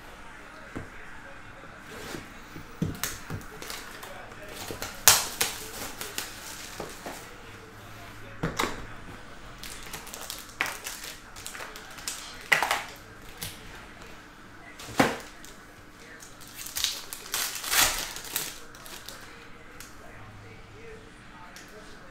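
Hands unsealing a Panini Spectra football hobby box and tearing open its foil card pack: irregular crinkling of wrapper and foil with sharp snaps and tears of cardboard, and the light clicks of cards being handled.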